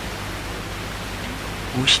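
Steady hiss of a recording's background noise, with a low steady hum beneath it. A speaking voice comes in near the end.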